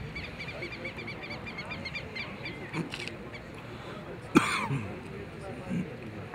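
A bird calling in a fast run of short chirps, about six a second, over a low murmur of voices. About four seconds in comes a single loud, sharp cry that falls in pitch.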